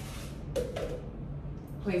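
Dry brown lentils being measured out into a cup: a soft rustling rattle with a few light knocks in the first second, quieter after.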